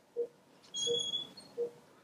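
Centurion phaco machine giving short, low electronic beeps about every 0.7 s as the cortex irrigation-aspiration step begins, with a brief higher-pitched chirp about a second in.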